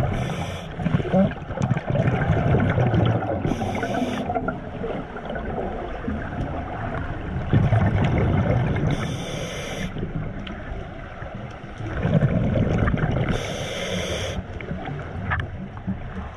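Scuba diver breathing through a regulator underwater: four short hissing inhalations a few seconds apart, with the rumbling, gurgling rush of exhaled bubbles between them.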